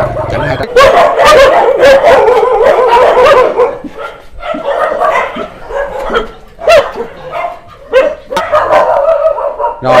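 Several dogs barking and yelping, densest and loudest in the first few seconds, then thinning to scattered barks. A motorbike engine running at the very start cuts off within the first second.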